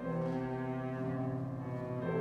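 Cello bowed in long, sustained low notes.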